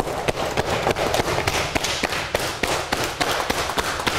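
Cupped hands slapping a leg through trousers in quick, even succession, several firm pats a second, a qigong cupping self-massage working slowly up from the ankle.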